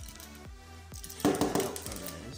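Background music, with a quick clatter of small plastic clicks a little over a second in: a one-by-one Lego stud dropping out of a brick-built candy machine onto the table.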